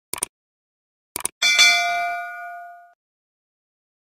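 Subscribe-button animation sound effects: a quick double mouse-click, another double click about a second in, then a bright notification bell ding with several ringing tones that fades out over about a second and a half.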